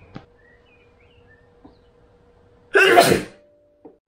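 A person sneezes once, loudly, about three seconds in. Before it come a couple of faint clicks of trading cards being handled.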